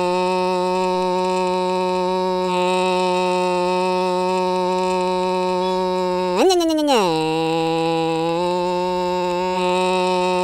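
Cartoon car engine sound effect: a steady buzzing drone at one pitch that revs up sharply and falls back once about six and a half seconds in, then settles at a slightly lower pitch.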